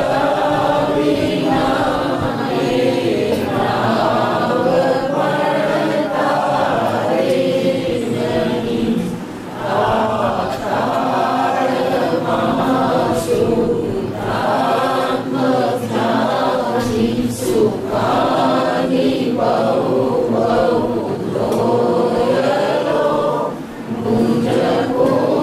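A group of voices chanting a devotional prayer together in unison, in long sustained phrases with a short break about ten seconds in.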